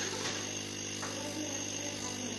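Jeweller's soldering torch flame hissing steadily while heating a gold piece, over a steady low hum.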